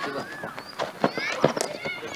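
Outdoor ambience of cricket net practice: several sharp knocks, most of them bunched about a second and a half in, among faint voices of players.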